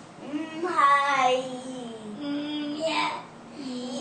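A young child singing without clear words, holding several notes and sliding between them.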